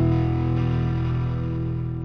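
Background music: a held chord that slowly fades toward the end.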